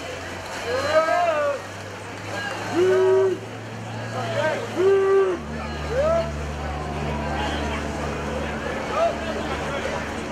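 Spectators on the pool deck yelling encouragement to swimmers, short shouted calls coming about once a second, two of them held longer, over a steady low hum and background noise.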